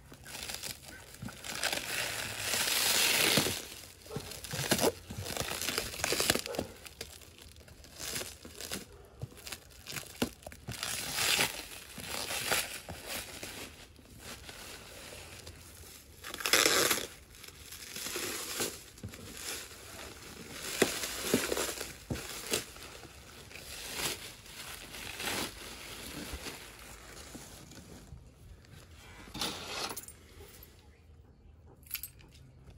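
Black plastic wrapping being pulled and torn by hand off a flat cardboard box, in irregular noisy bursts, loudest about two to three seconds in and again about seventeen seconds in.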